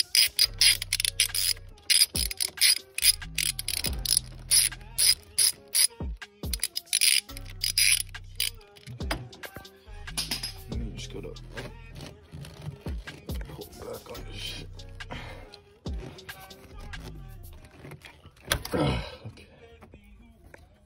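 Hand ratchet with a 10 mm socket clicking in rapid runs as a hose clamp screw on the charge pipe is backed off, the clicks growing sparser later on. A short louder scrape comes near the end.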